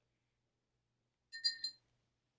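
Paintbrush clinking against its rinse cup: a short cluster of three quick ringing taps about a second and a half in, with the rest near silent.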